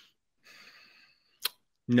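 A man lets out a faint breathy sigh while pausing before an answer, followed by one short sharp click, then his reply begins near the end.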